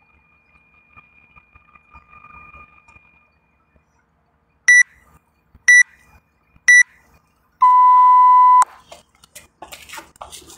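Workout interval timer's countdown: three short high beeps a second apart, then one longer, lower beep about a second long that signals the start of the next work round. Scuffling and clatter follow near the end.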